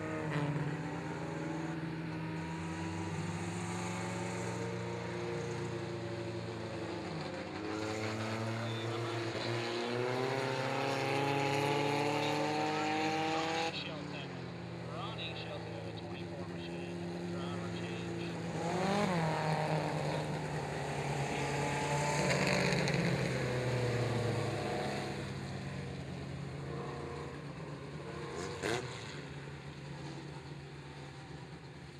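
Mini stock race cars' four-cylinder engines running on a dirt oval, their pitch climbing for several seconds as they accelerate before breaking off sharply. Later one car passes close with a rise and fall in pitch, and a single short knock comes near the end.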